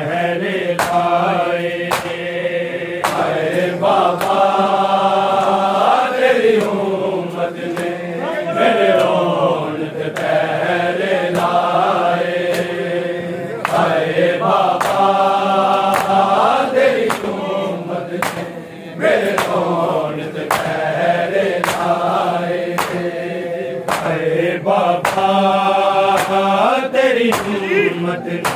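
Men's voices chanting a noha, a Shia lament, led by a reciter. Sharp slaps of chest-beating (matam) keep the beat at about one a second.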